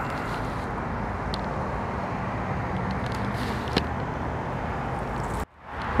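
Steady road rumble and engine hum heard inside a moving car, with a faint click or two. The sound cuts out abruptly for a moment near the end.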